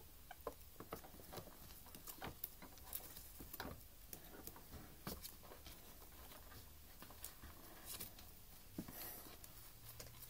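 Faint, irregular scratching, rustling and small taps of ferrets scrabbling over clothing, paper and plastic packaging.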